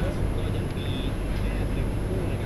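Steady low rumble of engine and road noise inside a moving taxi's cabin. A brief faint high tone sounds about a second in.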